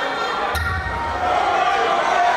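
A sudden thump about half a second in, followed by a deep low boom lasting about a second, with a voice carrying on over it.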